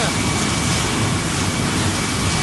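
Wood pellet mill running, a loud steady noise with a faint high whine over it, as pellets pour from its discharge down the chute.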